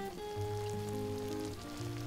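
Miso glaze sizzling and bubbling on a flat stone slab over charcoal, a soft crackling patter, under background music of long held notes.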